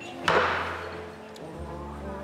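A whisky tumbler set down hard on a bar counter: one sharp knock about a third of a second in, fading quickly.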